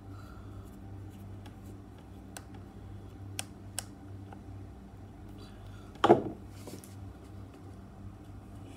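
Small screwdriver clicking against a terminal screw in a three-pin mains plug as it is tightened, a few sharp clicks. About six seconds in, one louder knock with a short rattle, the screwdriver set down on the table.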